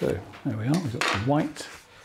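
A man's low, indistinct voice, with a light metallic clink about a second in.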